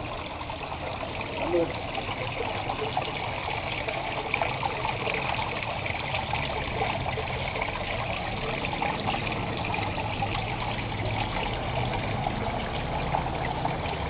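Water trickling and splashing steadily from a small rock fountain into a garden pond.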